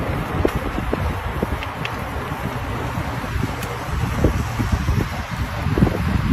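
Wind buffeting the microphone of a camera moving along with a cyclist on a road, a steady rushing noise with a fluttering low rumble.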